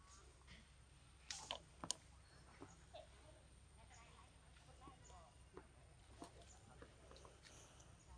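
Near silence: faint outdoor ambience with scattered soft clicks, the loudest a small cluster about a second and a half in, over a steady thin high tone.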